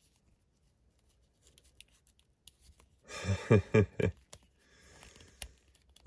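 Faint clicks and rustles of a plastic action figure and its cloth shorts being handled, with a short burst of a man's voice, under a second long, about three seconds in.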